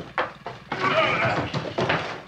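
Leatherface's squealing, bleat-like animal cries, wavering in pitch for about a second, after a few sharp knocks near the start.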